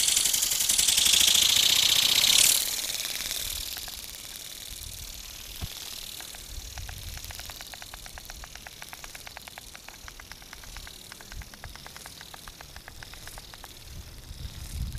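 Micro RC ornithopter toy bird, its little electromagnetic drive flapping the wings with a loud high buzz while held in the hand. About two and a half seconds in it is released: the buzz drops away and fades, leaving a faint rapid ticking of the wingbeats as it flies off.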